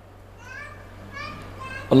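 Faint high-pitched calls of a child in the background, several short rising cries, over a steady low hum. A man's amplified voice starts loudly near the end.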